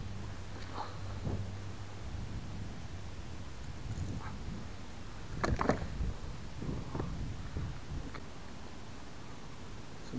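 Knocks and clatters of gear being handled aboard a fishing kayak over a low steady rumble, with a cluster of louder knocks about five and a half seconds in.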